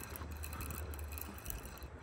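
Fishing reel being cranked to bring in a hooked catfish: faint gear whirring and small clicks, under a steady low rumble of wind on the microphone.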